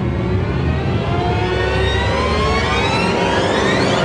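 Loud engine sound effect revving up, its pitch climbing steadily, over a heavy low rumble.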